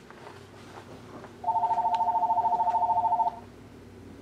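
A telephone's electronic ringer sounding one ring: a rapid two-tone trill lasting about two seconds, starting about one and a half seconds in.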